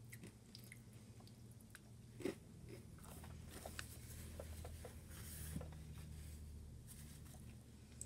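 A crisp-centred M&M chocolate candy being bitten and chewed: faint crunching, with one sharper crunch a little over two seconds in.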